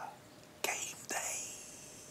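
A man's breathy, unvoiced laughter: two short hissing breaths, each starting with a click of the mouth, fading away by the second half.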